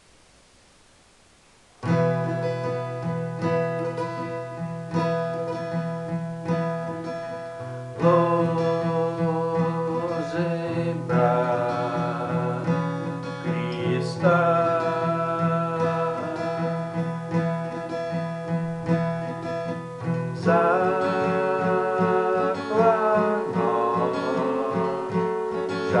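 Cutaway acoustic guitar strummed in a steady rhythm, starting about two seconds in, with a man singing over it from about eight seconds in.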